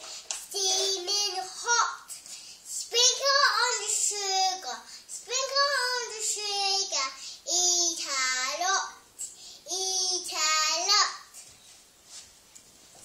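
A young girl singing a made-up-sounding tune in short phrases of one to two seconds, with brief pauses between them, stopping about a second before the end.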